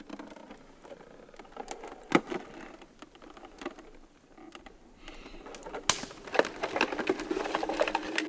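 Footsteps crunching on dry leaves and twigs of a forest floor, irregular crackles with two sharp snaps, about two seconds in and about six seconds in. The crunching grows denser toward the end.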